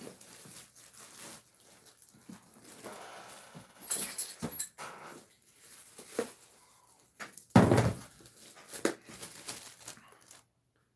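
Rummaging in a fabric tackle backpack and its plastic tackle trays: rustling, scattered light clicks, and one louder scrape or thump about three quarters of the way through.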